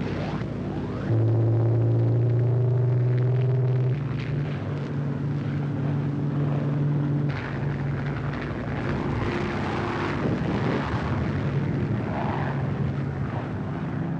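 Piston engines of a twin-engine bomber droning steadily in flight, heard on an old film soundtrack. The drone jumps louder about a second in, drops back and shifts pitch about four and seven seconds in, and turns rougher with more rumble in the second half.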